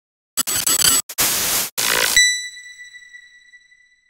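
Logo-intro glitch sound effect: harsh bursts of digital static, broken by brief cut-outs, ending about two seconds in on a clear high ringing tone that fades away.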